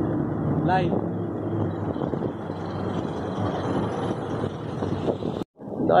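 A minibus engine running close by over continuous street traffic noise, with a steady low hum in the first couple of seconds. A short spoken phrase comes about a second in, and the sound cuts out for a moment near the end.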